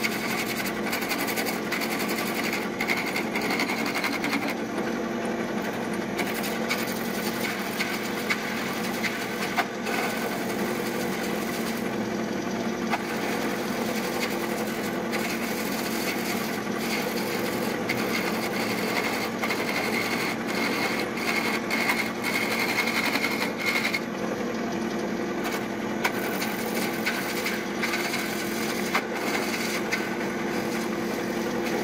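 Metal lathe running under cutting load, its turning tool peeling shavings off a spinning epoxy-resin cylinder. A steady motor hum runs under the scraping of the cut, and a higher whine swells and fades a couple of times.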